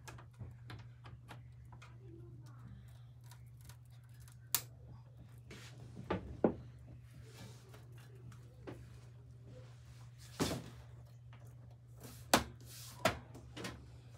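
Side panel of a HYTE Y60 PC case being fitted and pressed into place: scattered clicks and knocks as it is seated on the frame, a handful of them sharp, over a steady low hum.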